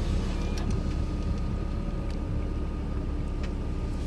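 Supercharged Toyota Land Cruiser FZJ80's straight-six idling steadily while stopped, heard from inside the cab, with a faint steady whine and a few light clicks.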